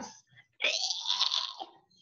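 A woman laughing: one breathy laugh lasting about a second.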